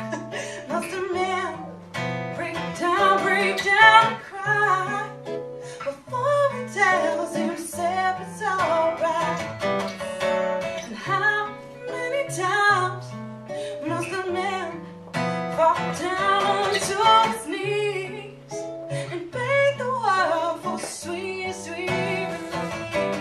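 A woman singing to her own strummed acoustic guitar, with a wavering vibrato on the held notes.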